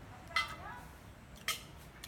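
Two short, sharp mouth smacks about a second apart as a man chews a bite of grilled meat wrapped in lime leaf.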